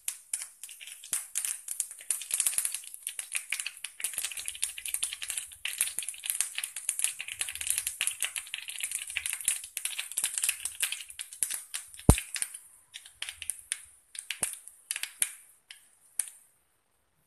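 Oil heating in a nonstick frying pan, crackling and popping continuously, with one sharp knock about twelve seconds in; the crackling thins out near the end.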